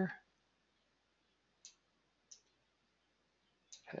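Two faint computer mouse clicks, about two-thirds of a second apart, with near silence around them.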